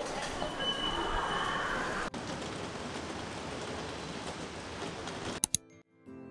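Seoul subway train running, a steady rumbling noise with a thin high squeal for about a second near the start. A short break about two seconds in, then the train noise carries on until two sharp clicks near the end, where it cuts off.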